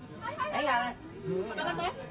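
People talking, with voices overlapping.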